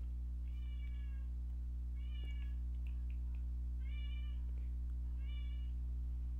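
Four faint, short high-pitched animal calls, each about half a second long, over a steady low electrical hum.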